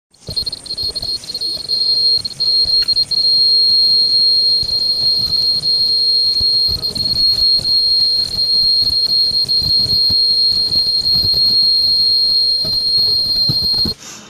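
JT-100-S ultrasonic lace cutting machine running, with a steady high-pitched whine held at one pitch over an uneven low rumble as fabric feeds through its cutting wheel.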